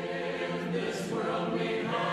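A choir singing a hymn a cappella, the voices holding long chords and moving to a new chord about a second in.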